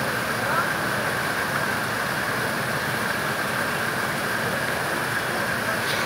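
Steady rushing of running water at a fish farm, an even, unbroken noise with no strikes or splashes standing out.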